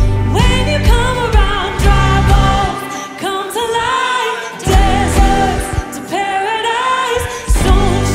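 Live worship band playing a song, with a woman singing the lead over electric bass, electric guitar and drums. The bass and drums drop out for about two seconds in the middle, and the full band comes back in near the end.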